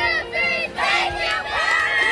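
A group of young boys shouting a team cheer together: a few quick chanted calls, then a long drawn-out group yell about a second and a half in.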